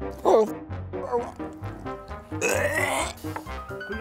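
Background music, over which a man chewing a crunchy mouthful of fish head makes short grunts and gagging noises, with a louder rasping one about two and a half seconds in.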